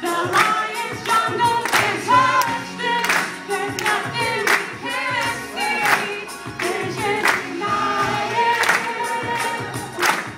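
A group of voices singing together over music with a steady beat, the sung hook of a parody song.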